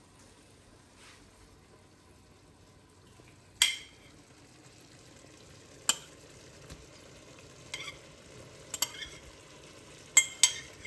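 Raw chicken pieces being tipped into a pot of potatoes cooking in curry paste and oil, with a faint, steady sizzle. Four sharp knocks on the pot break in, the first about a third of the way through and the loudest.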